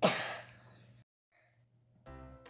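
A child's loud breathy exhale close to the microphone, fading over about half a second, then the sound cuts off to silence about a second in.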